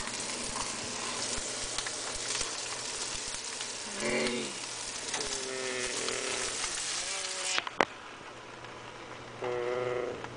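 Food sizzling and crackling in a hot frying pan, cutting off suddenly about three-quarters of the way through, followed by a sharp click. A voice makes drawn-out moaning tones over it a few times.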